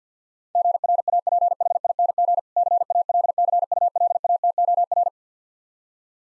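Morse code sent at 50 words per minute as a rapid stream of keyed tone beeps at one steady pitch, spelling out 'GRAPHING CALCULATOR', with a short word gap about two seconds in.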